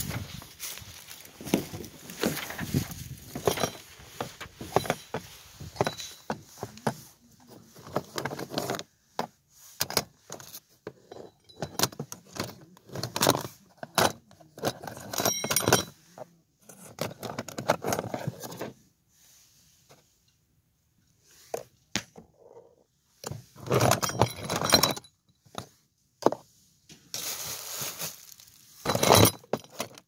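Keys and small metal tools clinking and rattling as hands rummage through a pickup truck's door pocket, in irregular bursts with short pauses between.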